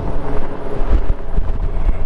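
Strong gusty wind buffeting the rider's microphone on a moving Honda Gold Wing, an uneven low rumble over the motorcycle's flat-six engine and road noise.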